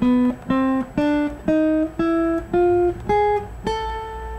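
Acoustic guitar playing a rising A scale in single plucked notes, about two a second: B, C, D, E flat, E, F, G sharp up to the top A, which is left ringing. This is an A harmonic minor scale with an added flat fifth (E flat), whose tritone against the root gives it a slightly odd, creepy sound.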